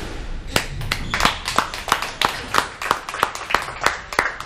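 Spectators clapping their hands in a steady, sparse rhythm of about three claps a second, starting about half a second in.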